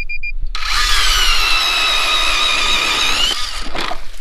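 24-volt lithium electric ice auger drilling a hole through lake ice: a steady high motor whine over a rasping hiss. It starts about half a second in, after a brief high beep, and rises in pitch just before it stops near the end.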